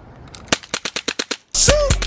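A BB pistol fired rapid-fire: about ten quick sharp cracks in under a second. Then music with a steady bass cuts in suddenly.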